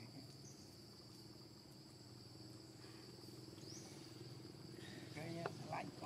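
Steady high-pitched drone of forest insects, with a couple of short rising chirps above it.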